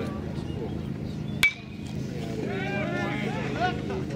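A metal baseball bat hits a pitched ball once about a second and a half in: a single sharp ping with a short ring. Shouting voices follow.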